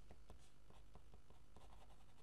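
Felt-tip pen writing on paper: a run of faint, short pen strokes as a word is written out.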